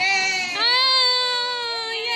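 A high-pitched wailing cry like a baby's: a short wail, then a long drawn-out one that slowly falls in pitch.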